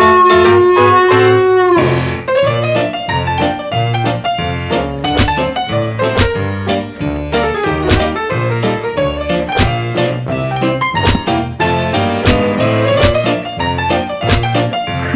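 A dog's howl, held on one pitch and falling away about two seconds in, then jazzy piano music with brass and sharp drum hits.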